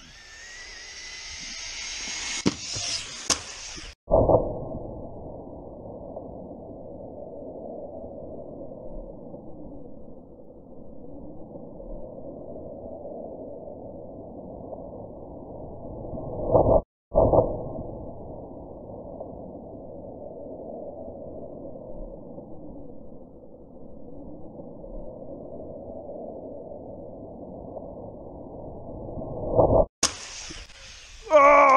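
Two Arrma Typhon RC buggies' brushless electric motors whine as they accelerate away, the whine rising in pitch, for about four seconds. The sound then cuts to a deep, muffled rumble of slowed-down audio with no high end, in two stretches split by a brief gap midway.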